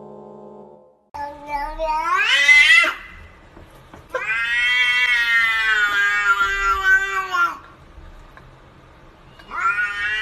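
Domestic cat meowing three times. The first meow, about a second in, rises in pitch. The second starts about four seconds in, lasts over three seconds and drops in pitch at the end. The third, near the end, is short and rising.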